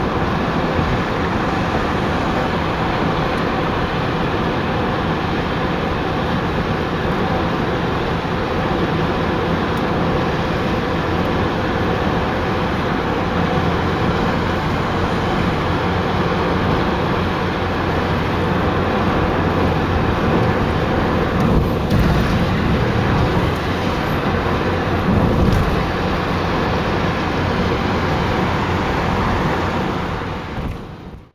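Steady road noise heard from inside a car cruising on a highway: tyre and engine drone, with two brief swells about two-thirds of the way through.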